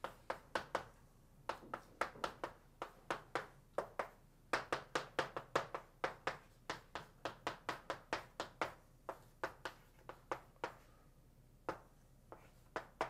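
Chalk writing on a blackboard: quick, irregular taps and clicks of the chalk against the board, several a second, thinning out near the end.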